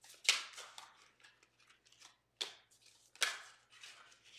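A tarot deck being shuffled by hand: a few sharp card snaps and slaps, three louder ones near the start, past the middle and shortly after, with softer card rustles between.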